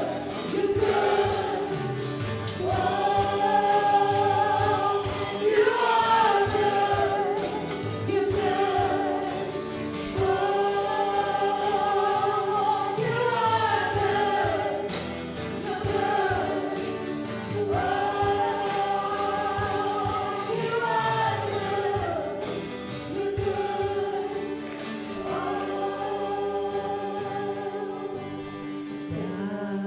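Live church worship music: several women's voices singing together in long, held phrases over strummed acoustic guitars and a drum kit.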